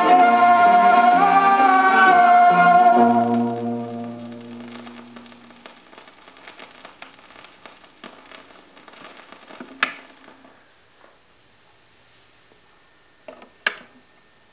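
Gospel music playing from a vinyl LP ends on a held final chord that fades out about four seconds in. The stylus then runs in the quiet groove with surface crackle and scattered pops, one louder pop near the middle. Near the end come a few sharp clicks as the turntable's tonearm lifts off the record.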